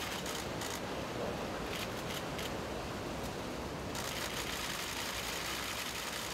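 Steady background noise with a few brief, faint clicks in the first half.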